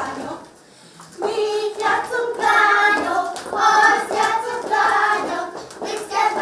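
Young children and women singing a song together as they dance in a ring, starting about a second in after a short pause.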